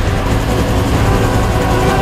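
Bell UH-1 Huey helicopter in flight, heard from inside the cabin with the side door open: loud, steady rotor and turbine noise.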